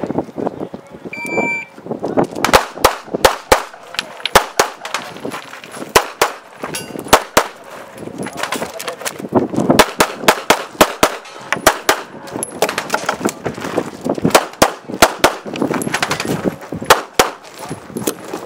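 A shot timer's short electronic start beep, then a CZ 75 pistol fired in rapid strings of shots, with short pauses between the strings.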